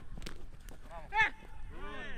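Men's short shouted calls during a football drill, the loudest about a second in. Just before them, about a quarter-second in, there is a sharp knock of a football being kicked.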